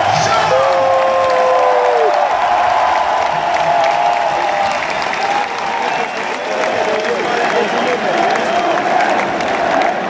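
Large arena crowd applauding and cheering, a dense wash of clapping with individual voices calling out above it. The music has just stopped.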